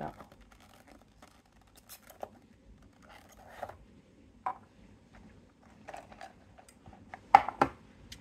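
Handling of a small cardboard box and its clear plastic insert as a diecast car is taken out: scattered short scrapes and rustles, then two louder sharp clicks close together near the end.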